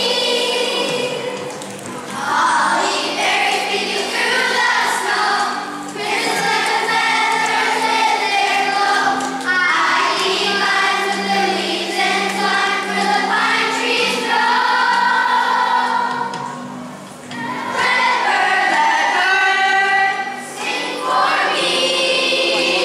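Children's choir singing, phrase after phrase, with short breaks between the lines.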